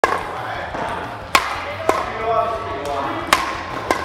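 Badminton racket strings striking a shuttlecock with sharp cracks in a large sports hall: five hits in four seconds, the two loudest about two seconds apart.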